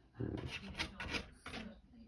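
Several short scratchy rubbing strokes over about a second and a half: a finger rubbing close to the microphone.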